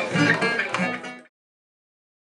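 Acoustic guitar being picked, a run of plucked notes that cuts off abruptly just over a second in.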